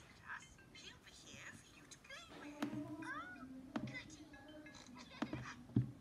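Cartoon voices played back at quarter speed, stretched into slow, warbling, meow-like glides, heard through a device's small speaker. A few sharp clicks, the loudest near the end.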